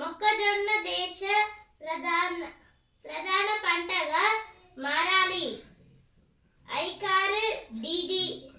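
A boy's voice reading a newspaper aloud in Telugu, in short phrases separated by brief pauses.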